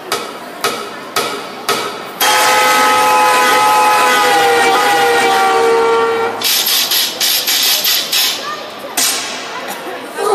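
Opening of a performance sound track played over a stage sound system. Four sharp hits come about half a second apart, then a loud held tone that slowly sinks in pitch, then a rougher, noisy stretch broken by more hits.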